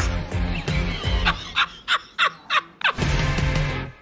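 A quick run of about six short, high gobbling calls over a couple of seconds, between stretches of music that fades out near the end.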